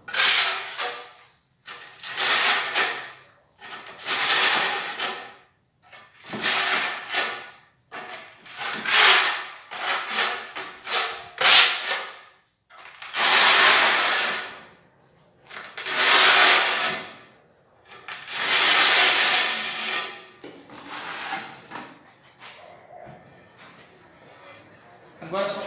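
Flat side of a steel notched trowel scraping cement mortar across the back of a porcelain tile in a series of long strokes, a second or two each, skimming the thin back-butter coat ('queima') that helps the tile bond to the mortar bed. The strokes grow fainter near the end.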